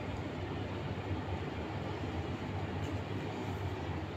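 Steady low hum and hiss of background noise, with no distinct events.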